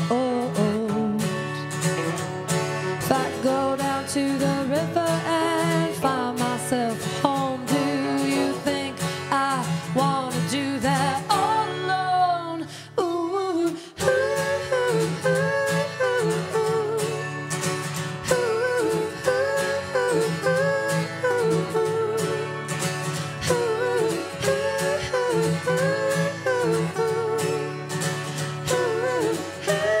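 A song sung to acoustic guitar, with a short break in the music about thirteen seconds in.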